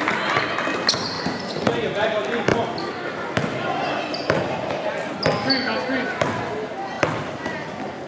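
A basketball dribbled on a gym floor, bouncing about once a second in a steady rhythm. Short sneaker squeaks and the chatter of voices in the gym run underneath.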